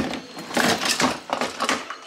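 A fabric backpack being pulled out of a plastic storage tote: a string of rustles and scrapes of the bag's fabric and straps against the plastic bin and the items inside it.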